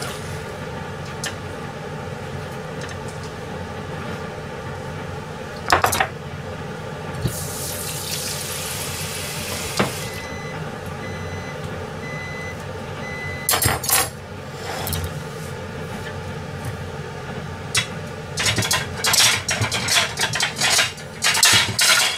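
Kitchen work over a steady background hum: a couple of single knocks, about three seconds of running water, a short run of high beeps, then ceramic plates and dishes clattering on a steel counter near the end.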